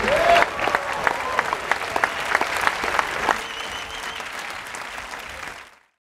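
Live audience applauding and cheering as the song ends, with a rising shout in the first half second. The applause dies down and then fades out completely just before the end.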